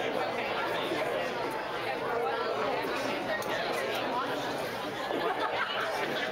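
Many guests chattering at once, overlapping voices with no one voice standing out.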